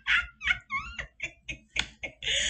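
A woman giggling with her hand over her mouth, a run of short laughing breaths that get briefer and quieter toward the end.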